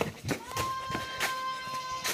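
Running footsteps and knocks on a barn floor, under a single steady high tone that begins about half a second in with a short upward slide and is held for about a second and a half.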